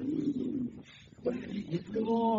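Low, indistinct human voices, in two short stretches with a lull in the middle.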